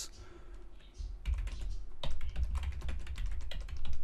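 Typing on a computer keyboard: after a brief pause, a rapid run of key clicks starts about a second in.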